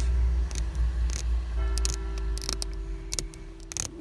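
Razor blade scraping a vignette sticker off the inside of a car windscreen, giving scattered short clicks and ticks. Under it runs a steady low rumble, the loudest sound, which fades out near the end, along with a few steady tones.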